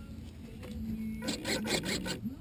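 Short rubbing and scraping noises close to the microphone, a quick run of them in the second half, over a faint steady low hum.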